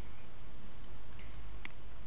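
Light computer mouse clicks, a couple of them, with the sharpest near the end, over a steady low hum.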